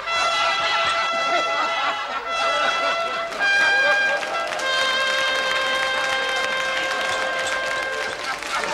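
Band or orchestral music playing a run of long held notes in brass, changing chord every second or so; it is the instrumental close of a song.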